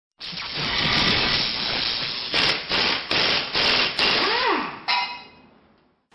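Logo-intro sound effects: a swelling whoosh for about two seconds, then five sharp hits in quick succession, a short tone sliding up and back down, and a final hit that rings and fades away.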